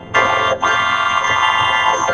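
Cartoon soundtrack distorted by the 4ormulator effect into a loud, buzzy, synthetic wall of stacked tones, like a harsh electronic chord. It starts about a fifth of a second in, breaks off briefly around half a second, and then carries on.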